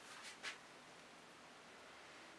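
Near silence: quiet room tone, with two faint short hisses in the first half-second.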